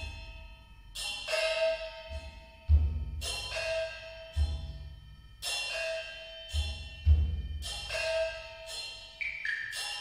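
Percussion duet on Chinese instruments: a rack of small pitched gongs struck in a ringing, repeating pattern, with deep strokes from large barrel drums about three seconds in and again around seven seconds. A short rising run of high metallic notes comes near the end.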